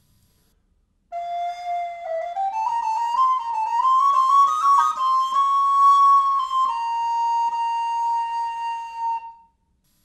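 Solo wooden recorder playing an expanded baroque ornament, with more notes but not fast. After a held opening note it climbs in a run of short steps, then settles on a long held high note that ends shortly before the end.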